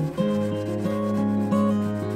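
Hand sanding of a wooden board with a sanding block, rubbing back and forth, heard together with acoustic guitar music.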